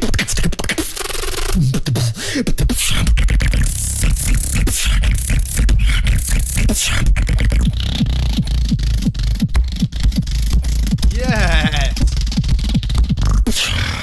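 Solo human beatboxing into a microphone: a fast, dense stream of vocal kick, snare and hi-hat sounds over a heavy, deep bass. About eleven seconds in, a wavering pitched vocal glide rises and falls over the beat.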